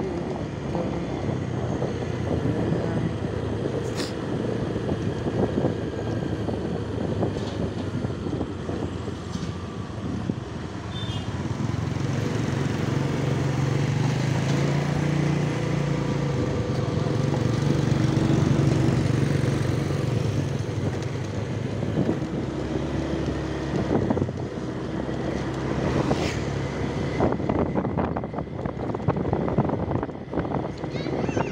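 Small motorcycle engine running steadily on the move, with wind and road noise. A second motorcycle's engine hum grows louder for several seconds around the middle as it comes alongside, and a few sharp clicks stand out.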